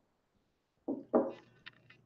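Two short throat or breath sounds from a man just after a sip of 62% cask-strength whiskey, the second the louder. Two faint clicks follow near the end.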